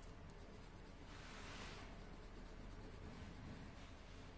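Faint scratching of a colouring pen on paper as a drawing is coloured in, with one clearer stroke about a second in lasting under a second.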